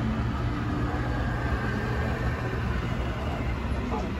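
Steady low rumble and hiss of a dark indoor boat ride, with no distinct events standing out.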